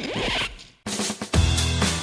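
A short whooshing transition sound effect, fading into a brief silence. Then music with a drum-kit beat starts about a second in.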